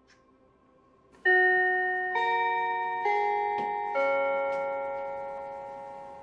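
School bell chime: four bell notes about a second apart, each ringing on and fading into the next.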